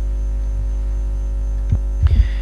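Steady electrical mains hum in the sound system, low and continuous, with a faint knock near the end.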